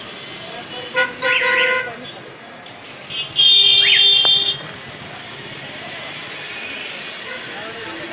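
Street traffic with vehicle horns: a short horn sounds about a second in, then a louder, higher-pitched horn blares for just over a second near the middle, over steady traffic noise.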